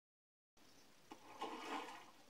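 Bath water sloshing, a short watery rush that swells about halfway in after a single faint click, heard through a television's speaker.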